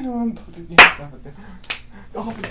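A drawn-out sung note fades out just after the start, then a loud, sharp click about 0.8 s in and a second, fainter click near the end.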